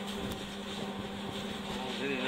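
Steady mechanical hum of running kitchen equipment, with one constant low drone.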